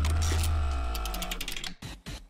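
Segment-transition sound effect: a deep boom under a held synthetic tone that fades away over about a second and a half, with a run of quick mechanical-style clicks in the second half that space out and stop.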